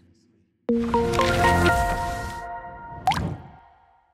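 Short musical logo sting: a sudden low hit with a chord of ringing notes that come in one after another, then a quick rising swoosh about three seconds in, fading away.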